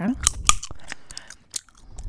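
Close-miked gum chewing: wet clicks and snaps of gum in the mouth, the sharpest about half a second in, then thinning out.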